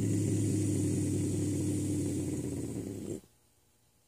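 Young bobcat growling: one long, low, rough growl that cuts off sharply about three seconds in.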